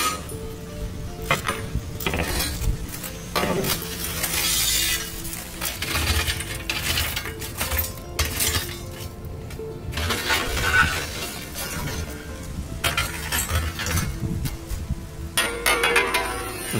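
Long-handled metal tool scraping across the brick oven floor, pushing hot wood embers that clink against each other in irregular knocks and scrapes, with steady background music throughout.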